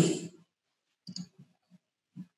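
A few faint computer mouse clicks, clustered about a second in.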